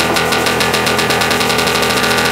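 Melodic techno at a build-up without the kick drum: a loud, dense synth wall held on sustained chords, pulsing quickly and evenly.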